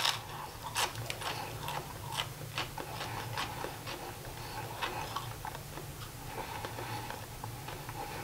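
A bite into a firm, crisp French bread pizza slice, then chewing with irregular small crunches and mouth clicks, over a low steady hum.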